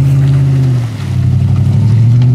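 A vehicle engine held at high revs as it strains through deep mud on an unpaved road: a steady, loud engine note that eases for a moment about a second in, then picks up again.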